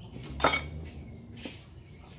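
A single sharp clack about half a second in: a steel cleaver striking a wooden chopping block, followed by a couple of faint clicks.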